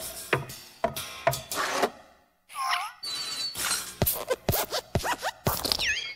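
Cartoon sound effects of an animated desk lamp hopping: a run of springy thuds, a brief pause about two seconds in, then squeaky creaks sliding in pitch mixed with more thuds.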